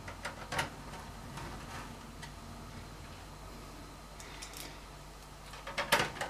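Hand screwdriver turning the power supply's mounting screws into a steel computer case: faint, scattered ticks, a few in the first couple of seconds and more a little later.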